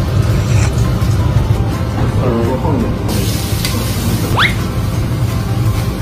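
Background music, with a brief voice about halfway through and a quick rising whistle-like glide near the end. A steady hiss comes in about three seconds in.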